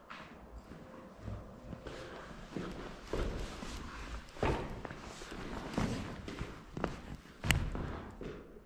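Footsteps on a rubble-strewn floor, irregular and getting heavier after about three seconds, with a sharp knock near the end that is the loudest sound.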